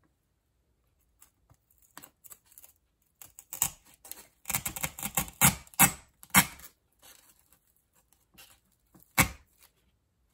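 A styrofoam cone is worked down onto a wooden dowel through faux fur: a run of scraping and rustling noises, thickest in the middle, then one sharp knock near the end.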